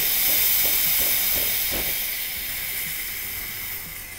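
Espresso machine steam wand being purged, hissing steadily as it blows out the water left in the wand before milk steaming; the hiss fades towards the end.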